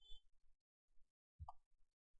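Near silence with faint room tone, broken by one short, soft knock about one and a half seconds in.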